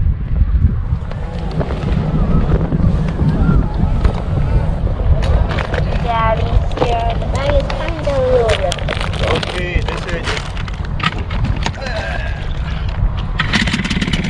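A steady low rumble with scattered clicks and knocks, and voices in the middle. In the last half second a small outboard motor starts on the first pull and begins running.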